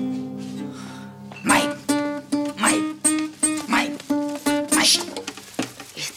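Classical acoustic guitar chord strummed and left ringing, then a man singing a quick run of short syllables on nearly one pitch over the guitar.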